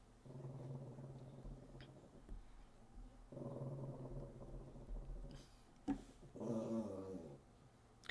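Faint, low, drawn-out vocal sounds from a pet under the desk, in three stretches, the last one short, with a single sharp click just before it.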